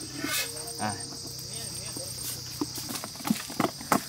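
Hands mixing syrup-soaked boondi in a large aluminium bowl: from about two and a half seconds in, a series of wet slaps, two or three a second and getting louder. Insects buzz steadily and high-pitched behind it.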